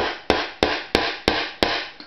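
Hammer driving a larger nail in with six quick, evenly spaced blows, about three a second.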